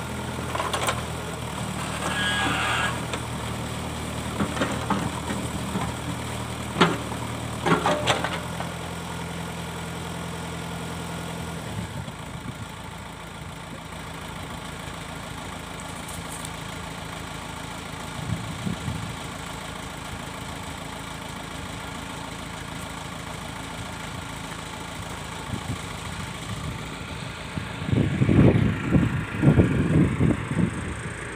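Backhoe loader's diesel engine running steadily while its digging arm works, with several sharp metallic knocks and clanks in the first eight seconds. After about twelve seconds the engine sound falls away to a lower, fainter running, and loud low rumbling thumps come near the end.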